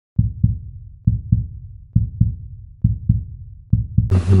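Low, deep double thumps in a steady lub-dub rhythm like a heartbeat: about five pairs, a little over one pair a second.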